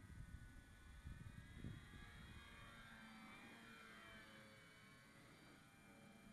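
Durafly Tundra RC plane's electric motor and propeller whining faintly in the distance, the pitch bending as the plane passes. Low wind rumble on the microphone in the first couple of seconds.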